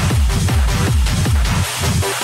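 Hard techno (schranz) DJ mix: a kick drum hitting about four times a second, each hit falling in pitch, under dense noisy percussion. Near the end the kick drops out, leaving the upper layers.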